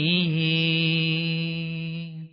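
A solo voice singing a Malayalam Islamic song without accompaniment, holding one long steady note at the end of a sung phrase. The note fades out at the very end.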